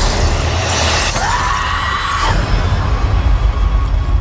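Loud cinematic trailer sound design over music: a dense crashing wall of noise with a deep low rumble, and a high tone that slides up about a second in, holds briefly and cuts off.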